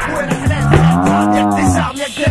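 Hip-hop backing track with a long, low, drawn-out sound that rises and then falls in pitch, lasting over a second, laid over the beat.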